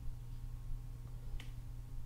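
A single short, sharp click about one and a half seconds in, over a steady low hum.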